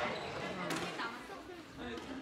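Squash ball being struck and rebounding off the walls during a rally, heard as a few faint knocks on the court.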